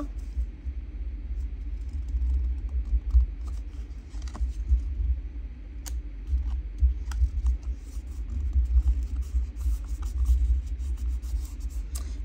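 Cardstock being handled by hand: faint paper rustles and small clicks as a tag is folded and pressed down, over a continuous low, uneven rumble.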